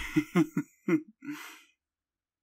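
A man's soft chuckle: a few short laughing breaths in quick succession that trail off into a breathy exhale about halfway through.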